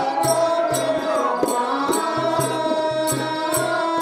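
Stage music for a Telugu folk play: a sustained melody line over a hand drum and sharp cymbal-like clicks keeping a steady beat.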